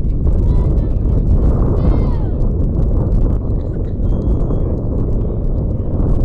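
Wind blowing across the microphone, a loud steady low rumble, with faint distant voices of players calling out, one call rising and falling about two seconds in.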